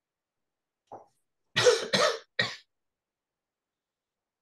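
A person coughing: a faint short sound about a second in, then three quick coughs in a row, the first two the loudest.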